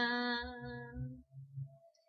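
A solo voice holding a hummed 'la' note on one steady pitch, which fades out a little after a second, with a few soft low thuds underneath before it goes quiet.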